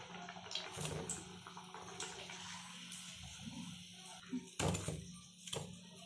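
Hot oil sizzling faintly around breaded eggs, the hiss fading after a few seconds, then two sharp clicks of a metal slotted spoon about a second apart, over a steady low hum.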